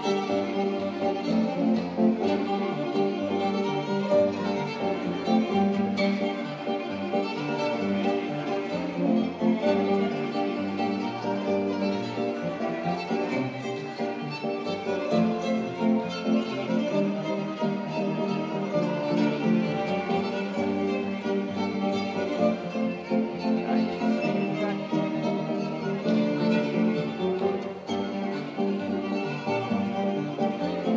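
Fiddle playing a tune with accompaniment, continuous and unbroken.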